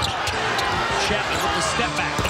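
Basketball dribbled on a hardwood court, a series of short bounces over the steady noise and voices of an arena crowd.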